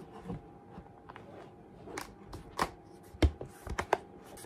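Crunchy snapping and clicking of a Zugu protective case as an iPad is pressed into it: a run of sharp clicks in the second half, the loudest about three seconds in.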